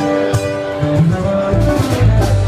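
A live band is playing music, with guitars over bass and drums. A deep bass note comes in near the end.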